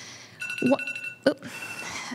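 A steady electronic beeping tone with a fluttering higher chirp, lasting about a second and a half, heard under a brief spoken "go ahead".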